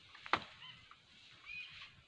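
A single sharp crack of an acacia branch snapping as an elephant pulls it down with her trunk, about a third of a second in. Short high calls follow near the end.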